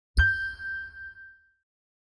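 Audio logo sting: a single bell-like chime with a low thud under it, struck once just after the start and ringing out over about a second and a half.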